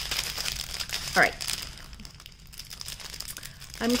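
Thin clear plastic packets crinkling as they are handled, a quick irregular run of small crackles.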